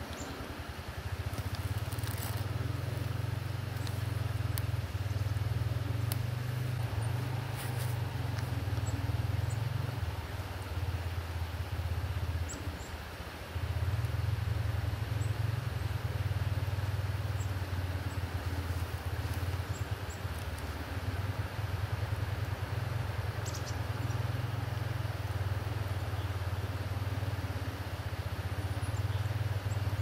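A steady low rumble that dips briefly about twelve seconds in and then carries on, with a few faint ticks over it.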